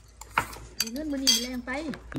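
A metal spoon clinks against a bowl a few times during eating, followed by a held vocal sound from the eater lasting about a second.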